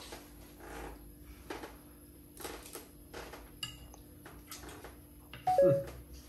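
A metal fork clinking and scraping against a plate of food in faint, scattered taps, a couple of them with a brief ringing ping. Near the end a man gives a short 'Mm' as he tastes.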